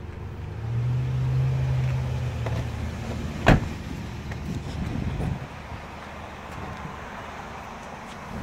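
Low hum of a motor vehicle, strongest in the first few seconds and then fading, with one sharp knock about three and a half seconds in.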